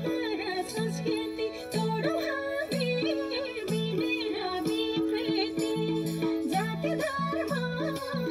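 Indian folk dance music with singing: a short instrumental phrase repeating in a steady rhythm under a wavering sung melody.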